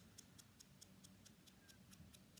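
Foam ink dauber tapped rapidly around the edge of a die-cut card oval, making faint, light, high ticks in a steady rhythm of about six or seven a second.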